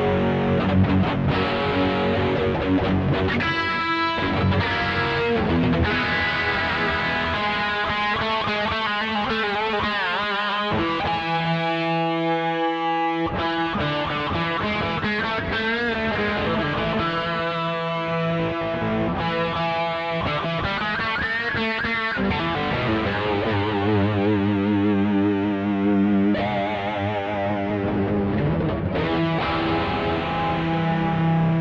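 Electric guitar lead playing: a run of melodic lines and long held notes with a wavering vibrato. The bass drops away briefly about twelve seconds in, leaving one held note on its own.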